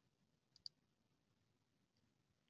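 Near silence with a single faint computer-mouse click about two-thirds of a second in, as an item is picked from a dropdown list.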